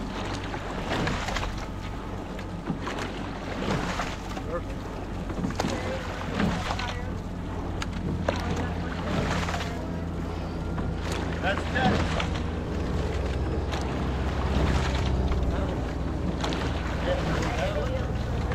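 Quad sculling boat under way: the oars work the water in a steady stroke rhythm, with brief splashes and knocks every second or two over water rushing along the hull and wind on the microphone. A steady low hum runs underneath.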